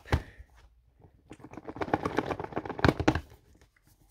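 Cardboard Samsung Galaxy Note 10+ box being worked open by hand: a click at the start, then about two seconds of dense crackling, tearing and scraping as the sealed lid is pulled loose.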